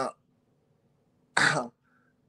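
A person clears their throat once, briefly, about one and a half seconds in.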